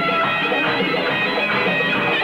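Armenian folk-pop music in an instrumental passage without vocals, a reedy wind instrument carrying the melody over the band's accompaniment. It sounds dull, with no high treble.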